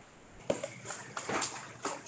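Papers and small objects handled on a conference table: a few short knocks and rustles about half a second apart.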